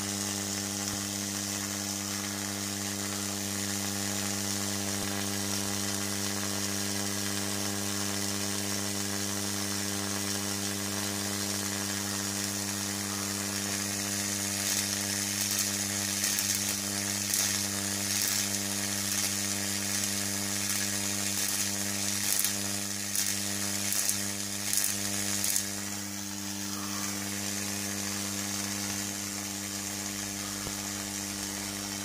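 Slayer-exciter Tesla coil running, its spark streamer making a steady electric buzz and hiss. From about 15 to 25 seconds in, a finger is brought near the streamer and the discharge breaks into irregular, louder crackles before settling back to the steady buzz.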